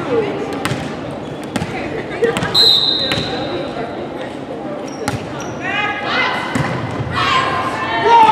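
Volleyball rally in a gym: several sharp ball hits and thuds ring out in the hall, with a sustained high squeal about two and a half seconds in. Players shout and call to each other through the last couple of seconds.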